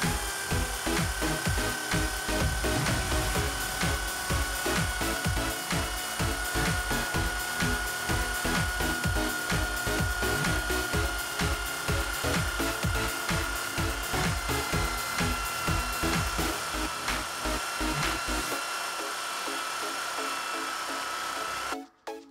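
A cordless drill spinning a short M8 steel threaded rod against an abrasive disc, grinding one end down thinner. Its motor gives a steady whine that sinks slowly in pitch under the load, then cuts off suddenly near the end.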